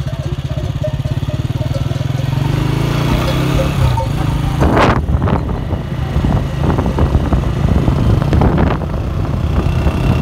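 Motorcycle engine running steadily at low speed, a low pulsing drone. From about four seconds in the sound turns rougher and gustier as wind buffets the microphone.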